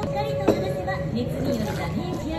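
Indistinct chatter of several voices, with one sharp click about half a second in.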